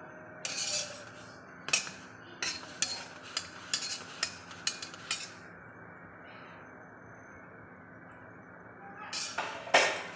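A metal spatula clinking and knocking against a tawa as a roti cooks and puffs up on it. A quick, irregular run of about a dozen sharp taps fills the first five seconds, then a few seconds of steady hiss, then a couple more knocks near the end.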